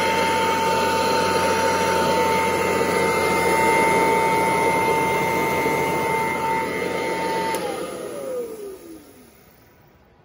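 Kirby 508 upright vacuum cleaner running over carpet, its motor giving a steady high whine. About three-quarters of the way in the motor is switched off and winds down, the whine falling in pitch as the sound fades away.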